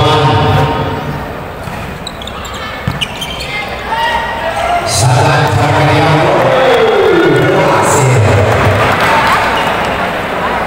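Volleyball rally in a crowded indoor sports hall: sharp hits of the ball, about three and five seconds in, over a steady crowd din. The crowd gets louder from about five seconds in as the rally plays out and the point is won.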